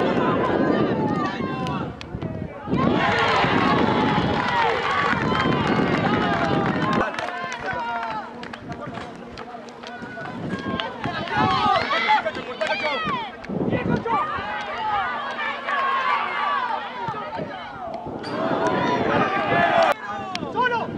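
Shouting from football players and onlookers on the pitch, several voices overlapping with no clear words, louder at the start and again near the end. A faint steady hum runs under the voices through the middle.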